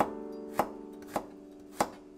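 Kitchen knife chopping a garlic clove on a cutting board: four sharp strokes, about one every 0.6 s, over soft piano music.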